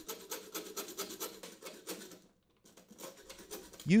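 Hacksaw cutting back and forth through the crimped end of a Honda lawn mower's metal trail shield shaft, a run of quick strokes that stops about halfway through.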